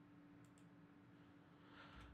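Near silence: room tone with a faint computer mouse click about half a second in.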